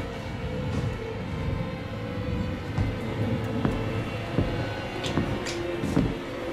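Horror-film soundtrack: a low rumbling drone with a held note that steps down in pitch about four and a half seconds in, with a few faint knocks.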